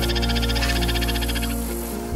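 Upland sandpiper giving a rapid, evenly pulsed high trill that stops about one and a half seconds in, over background music with steady low notes.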